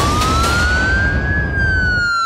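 Police-style siren sound effect in a news segment's opening sting: one wail rising in pitch, peaking about one and a half seconds in and starting to fall, over a heavy, steady bass rumble that stops at the end.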